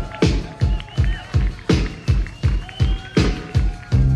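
Rock drum kit playing a steady beat, bass drum and snare at about two and a half strokes a second, with a few long high tones held over it.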